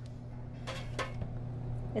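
Metal tongs dipping a fish fillet through egg wash in a stainless steel pan, with two short soft scrapes or clinks about two-thirds of a second and a second in, over a steady low hum.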